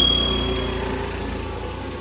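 A single bright bell ding at the very start, ringing out and fading within about a second, laid over the steady low running of a motor scooter's engine as it pulls away.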